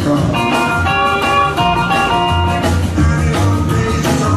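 Live rockabilly band playing an instrumental passage without vocals: an electric guitar line of held, ringing notes over a walking bass and a steady drum beat.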